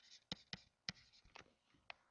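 Faint taps and scratches of a stylus on a pen tablet as a short figure is handwritten, about six soft clicks spread over two seconds.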